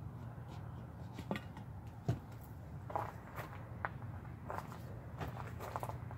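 Faint handling sounds: a few light clicks and taps as a plastic trigger spray bottle is worked and set down on a table and a plastic pitcher is lifted, over a low steady hum.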